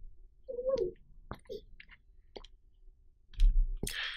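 A few faint sharp clicks spread through a quiet pause, with a short squeak about half a second in.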